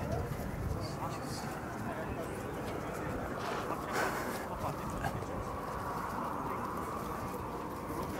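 Low outdoor background noise with faint distant voices, with no clear sound event.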